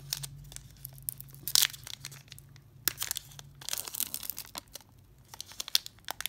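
Foil wrapper of a Topps T206 baseball card pack being torn open and crinkled by hand: irregular crackles and rips, the loudest about one and a half seconds in.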